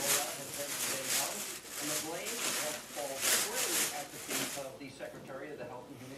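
Hands rubbing and rustling materials on the work table in repeated short strokes, about two or three a second.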